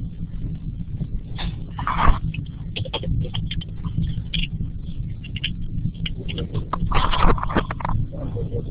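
Steady low electrical hum and buzz on an open microphone line, with scattered small clicks and crackles and two short louder noises, about two seconds in and near the end.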